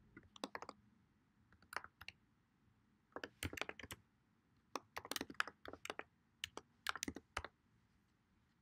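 Typing on a computer keyboard: keystrokes come in several quick bursts separated by short pauses, and stop near the end.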